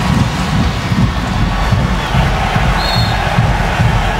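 Stadium crowd of soccer fans, a steady din that grows louder in the second half as an attack goes down the wing, with one brief high whistle blast about three seconds in.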